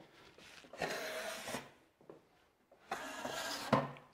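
Steel drywall taping knives scraping wet joint compound, in two strokes: one about a second in, and another near the end as the blade is wiped against a smaller knife.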